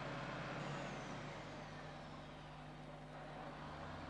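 Faint, steady engine hum of a bus heard from inside its passenger cabin.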